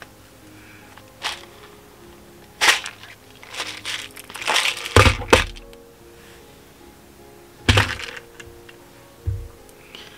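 Handling sounds of yarn being slid off a plastic organizer case used as a pom-pom form: scattered knocks and scrapes as the case is worked free and set down on the table, the loudest a pair of knocks about five seconds in.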